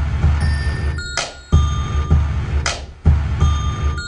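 A programmed hip-hop beat playing back from a web-based beat maker: a sharp drum hit about every second and a half over deep, heavy bass notes, with high bell-like synth tones held between the hits.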